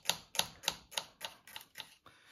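Small kitchen knife chopping a garlic clove on a wooden cutting board: quick, even taps of the blade on the board, about five a second, getting fainter toward the end.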